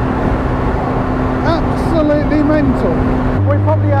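Ariel Atom's supercharged 2.0-litre Honda engine running at a steady cruise under heavy wind and road noise in the open cockpit. Near the end the sound changes abruptly to a steadier, deeper engine hum with less wind.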